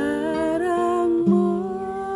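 A woman singing two long, wavering held notes to her own acoustic guitar accompaniment; a new guitar chord comes in just over a second in.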